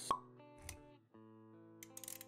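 Animated-intro sound effects over background music: a sharp pop right at the start, the loudest sound, then a low thump just past half a second. The music, in steady held notes, breaks off briefly about a second in, then resumes with a few light clicks near the end.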